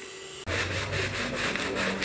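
Scrubbing of wet, soapy tiled stairs: a quick, even run of back-and-forth scraping strokes that starts suddenly about half a second in.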